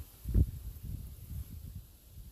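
Low rumbling noise from wind and handling on a handheld phone microphone, with one thump about half a second in.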